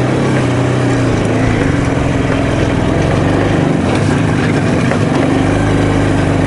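IZh Jupiter-3 motorcycle's two-cylinder two-stroke engine running steadily under way, its pitch shifting slightly about a second in.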